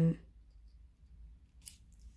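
Cardboard jigsaw puzzle pieces being moved by hand on a table: a faint, brief rustle near the end of an otherwise quiet moment.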